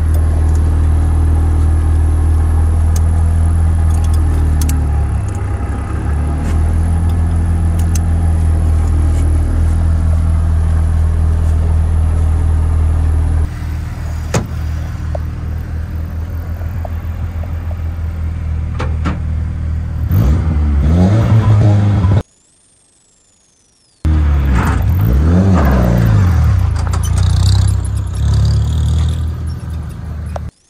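Rally car engine idling steadily, with scattered clicks and knocks around the cockpit, then revved up and down in several blips. The sound cuts out for about two seconds partway through, and the revving resumes after the gap.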